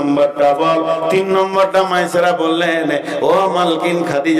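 A man's voice chanting in a melodic, sung delivery, holding long level notes, with a rising glide in pitch about three seconds in: a preacher intoning his Bengali waz sermon in sung style.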